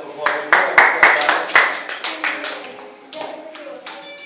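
A small group clapping hands: a burst of sharp, uneven claps in the first two seconds that thins out, with voices over it.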